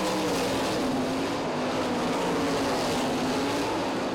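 Winged sprint car racing engines (410 cubic-inch V8s) running at speed around a dirt oval, a steady drone that wavers gently in pitch.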